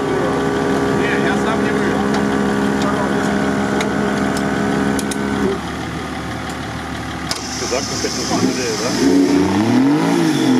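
A steady mechanical hum runs through the first half and stops about halfway. Near the end, the engine of a trophy-raid off-road buggy stuck in sand revs up and down while its wheels spin.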